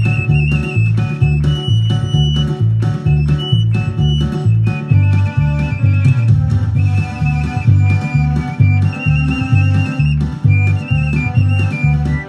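Basque txirula (three-holed pipe) playing a high, ornamented folk melody, accompanied by the steady beat of a ttun-ttun string drum struck with a stick.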